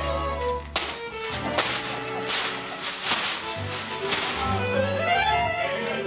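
Sharp cracks, about five spaced roughly a second apart, over string music with a low bass line.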